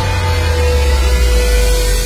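Electronic background music in a held passage: a deep sustained bass note under one steady higher tone and a wash of hiss, with no beat.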